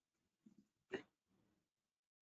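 Near silence: room tone, broken by one short, faint sound about a second in.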